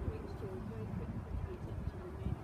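Indistinct voices talking in the background, over irregular low thuds and rumble.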